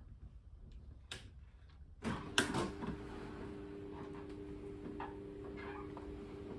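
Quiet room tone with a sharp click about a second in. About two seconds in, a steady low hum starts, with another click just after it.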